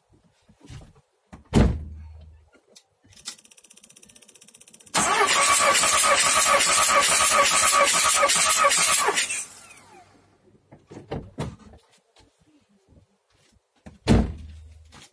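A thump and a faint buzz, then the starter motor cranks the Skoda Octavia's 1.9 TDI diesel for about four seconds with its glow plugs out, in an even rhythmic chug, and stops. This is a compression test with a gauge on cylinder 3, which reads about 21 bar.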